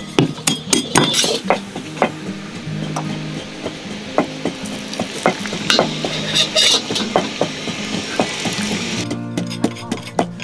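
Hot oil sizzling in a wok, with frequent sharp crackles and clinks, over soft background music.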